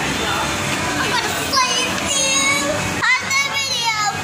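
A young girl's high-pitched voice making drawn-out, wordless sounds that rise and fall in pitch, over steady background noise.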